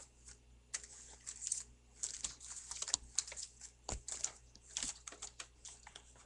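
Quick, uneven clicks of typing on a computer keyboard, in short runs.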